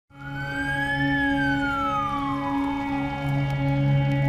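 A siren wailing: one slow cycle that rises for about a second, falls for two, and starts to rise again near the end. It sounds over a sustained ambient music chord.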